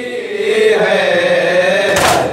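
Men chanting a noha, a Shia lament, amplified through a microphone: one long, held line that wavers slowly in pitch.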